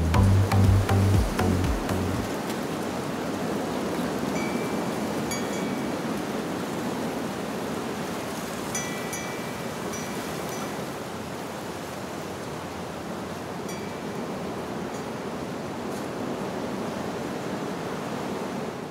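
Music with a bass beat cuts off about two seconds in, leaving a steady rushing sound of water, like surf or a stream. A few short high chirps sound over it now and then.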